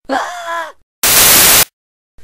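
A man's voice groaning "eh" with a bending pitch, then about a second in a loud half-second burst of static-like hiss, the loudest sound here.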